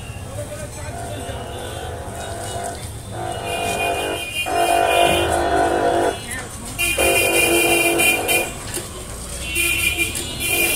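Several long, steady horn blasts, each held for one to two seconds, over a constant low background rumble of traffic.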